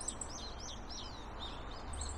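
A small songbird calling, a quick run of short high chirps repeated about three to four times a second, over a low wind rumble on the microphone.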